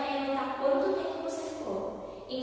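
A woman talking, in the steady flow of a spoken lesson.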